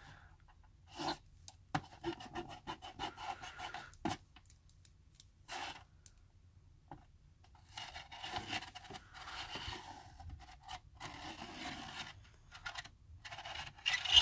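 Pencil scratching on paper as a small plastic gear is rolled around the toothed plastic ring of a spiral art drawing toy, with light ticks from the gear and ring. It comes in short scattered strokes at first and runs more continuously in the second half.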